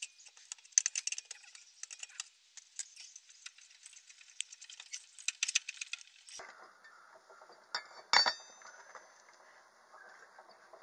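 Short metallic clinks and taps from a lug wrench working the lug nuts of a car wheel during a tyre change. About eight seconds in there is a sharper metal clank that rings briefly.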